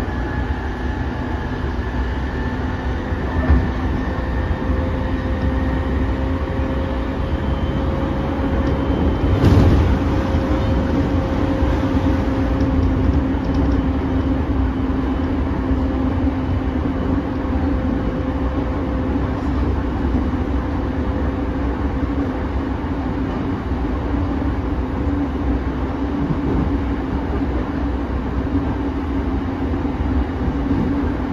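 Running noise of a JR 209 series 500 electric train heard from inside the passenger car: a steady low rumble of wheels on rail with a constant motor whine. There is a single loud knock about nine and a half seconds in.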